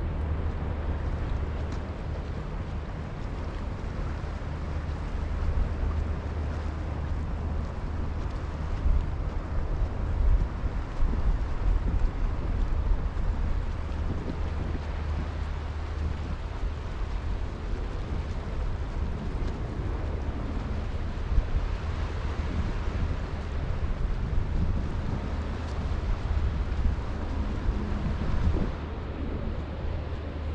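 Wind buffeting the microphone in uneven gusts with a low rumble, over the steady wash of sea waves on a rocky lava shore.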